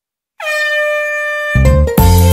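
Cartoon bus horn sound effect: one steady honk starting about half a second in and lasting about a second. Upbeat children's music with a strong bass and beat comes in right after it.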